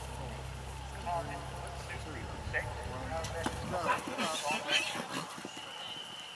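Voices in the background, then a horse's hoofbeats on grass as it sets off from the start box, with a low rumble that stops about four seconds in. A steady high tone begins near the end.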